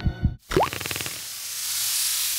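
Intro logo-animation sound effects: two short low thuds, a quick upward-gliding blip about half a second in, then a swelling whoosh of hiss that builds to the end.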